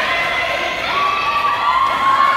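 Girls shouting and cheering, several long high-pitched yells overlapping one another.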